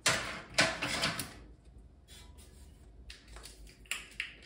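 Plastic measuring spoons and a scoop clattering and rustling as they are handled and taken out of a storage cabinet. A few sharp clacks come in the first second and a half, then lighter scattered clicks.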